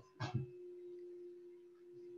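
A faint steady tone held at one pitch, just after a brief trailing bit of a man's voice.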